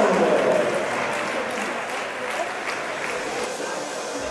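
Audience applauding in a hall, loudest at the start and slowly easing off.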